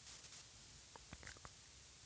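Near silence: faint background hiss with a few soft clicks.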